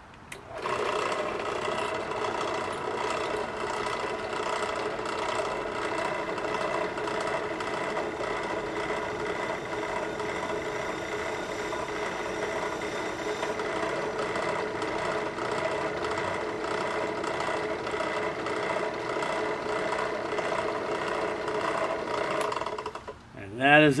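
Drill press starting up and running steadily with several steady tones, its weighted-down, non-cobalt bit grinding into half-inch AR500 hardened steel plate and making little headway; the motor stops just before the end.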